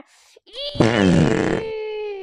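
Comic fart sound effect: a buzzy rasp starting about half a second in and rising in pitch for about a second, then thinning into a falling tone that dies away.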